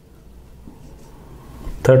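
Faint rubbing of a marker pen writing on a whiteboard.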